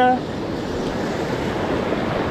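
Broken surf washing up the beach, a steady rushing of foaming water.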